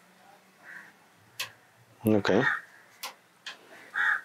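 A pause in conversation with low room tone, broken by a few sharp isolated clicks and one short spoken "okay" about two seconds in.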